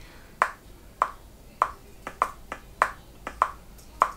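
Software metronome click in Logic Pro X ticking at a steady tempo, about one click every 0.6 seconds (roughly 100 beats a minute). There are a couple of fainter clicks between beats near the end.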